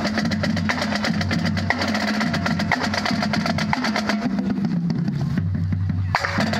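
Parade drumline playing a fast drum cadence of many quick snare and drum strokes, over the steady low hum of a running vehicle engine. The drums pause briefly near the end, leaving only the engine hum.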